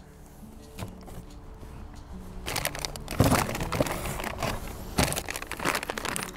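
A clear plastic parts bag crinkling and crackling as it is picked up and handled, starting about halfway through, over quiet background music.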